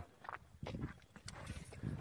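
Faint, irregular footsteps scuffing over grass and dirt.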